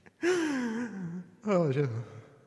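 A man's breathy, drawn-out vocal sliding down in pitch for about a second, then the words "med mig", also falling, closing the sung line without backing music.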